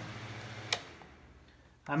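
Electric air-circulator fan running on high, switched off with a single click about three-quarters of a second in; its air noise then fades away as the blades spin down.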